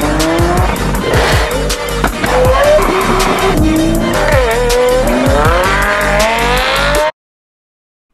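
Music with a fast, steady beat mixed over sports-car engines revving and accelerating, the engine pitch climbing and dropping as it shifts through the gears. Everything cuts off abruptly about seven seconds in.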